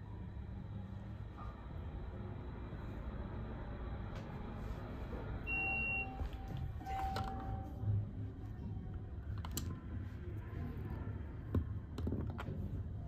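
ThyssenKrupp hydraulic elevator car running with a steady low rumble; about halfway through, an electronic arrival beep sounds, a short high tone then two lower tones, as the car reaches the floor, followed by a couple of sharp clicks near the end.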